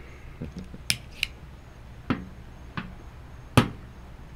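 Cigar cutters clipping the heads of cigars: a handful of sharp, separate clicks and snips, the loudest near the end.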